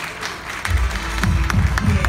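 Audience applauding, with loud music with a heavy bass beat starting up about two-thirds of a second in.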